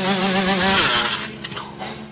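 KTM two-stroke dirt bike engine held at full revs, a buzzing note wavering up and down, with a hiss rising over it before the sound drops away about a second in. The engine is being run to destruction, its header pipe glowing and burning out, until it is broken.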